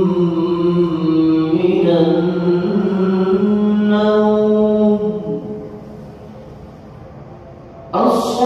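A man's voice chanting an Islamic call or recitation in long, held melodic notes that shift in pitch. The phrase trails off about five seconds in, and a new loud phrase begins at the very end.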